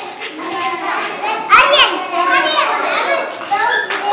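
Many young children talking and calling out at once, their voices overlapping, with a louder high-pitched child's cry about a second and a half in.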